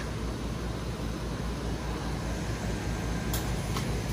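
Cube ice machine running steadily at the end of its freeze cycle, just before it goes into harvest, as a low, even machine hum. A single sharp click comes near the end.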